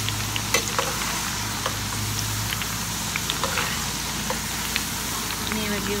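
Tindora (ivy gourd) strips frying in hot oil in a steel pan: a steady sizzle with scattered small pops and crackles, as a slotted spoon stirs and lifts the pieces.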